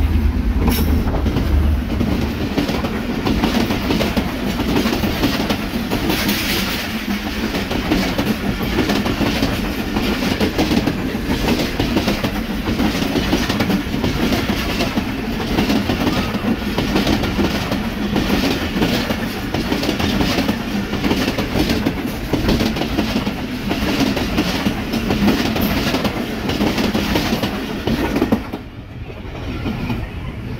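Diesel-hauled passenger express passing close by at speed. The locomotive's engine rumbles in the first second, then a long rake of coaches clatters past with a steady rhythmic clickety-clack of wheels over rail joints. The sound drops off suddenly near the end.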